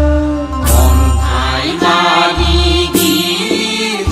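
Bathou devotional song (aroz): a chanted, sung vocal over a deep bass and a sharp beat struck about every two seconds.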